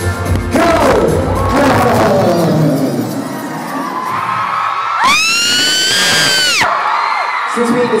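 Live concert music with a heavy bass line that drops out in the first couple of seconds, leaving crowd noise. About five seconds in, one long, piercing fan scream right at the microphone rises and holds for about a second and a half, followed by crowd cheering and whoops.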